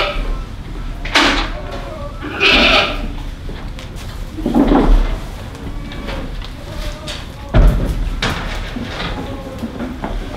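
Boer goat rams bleating, several separate calls in the first half, with a sharp knock about three-quarters of the way through.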